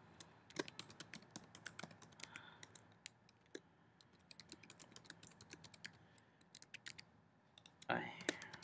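Faint typing on a computer keyboard: irregular runs of quick key clicks, thinning out with a short pause shortly before the end.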